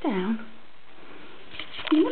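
A short voice sweeping steeply down in pitch, then a few quick sniff-like clicks near the end.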